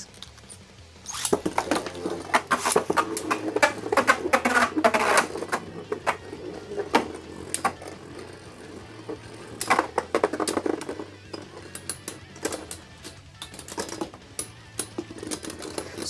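Beyblade Burst spinning tops launched into a plastic stadium about a second in, whirring and clacking against each other and the stadium wall, with dense rapid collisions in the first ten seconds and sparser ticks later. The battle ends in a burst, with one top breaking apart into its ring, disc and driver.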